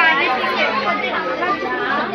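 Several people talking at once: a steady babble of overlapping voices with no single clear speaker.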